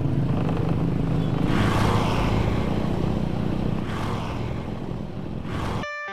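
Motorcycle engine running steadily while riding, with road and air noise around it; the sound cuts off suddenly near the end.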